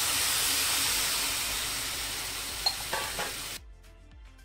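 Water sizzling and hissing as it hits fried ginger and spices in a hot non-stick pan, slowly dying down, with a few spatula knocks and scrapes near the end. The sizzle cuts off abruptly a little before the end, giving way to quiet background music.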